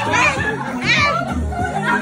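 Dance music with a steady bass beat playing, with children's voices and shouts over it.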